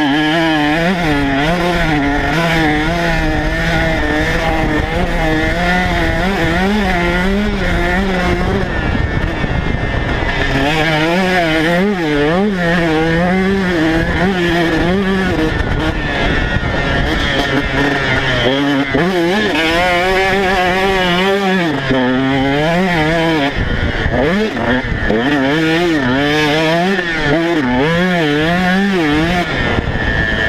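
Onboard sound of a KTM 150 SX single-cylinder two-stroke motocross engine being ridden hard, its pitch rising and falling over and over as the rider accelerates, shifts and backs off through the track's corners and straights.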